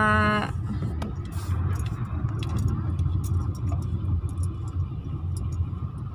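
Steady low rumble of a car being driven, heard from inside the cabin, with a few faint light ticks.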